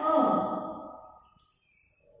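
A voice holding a long, drawn-out vowel that fades away over about a second, then near quiet.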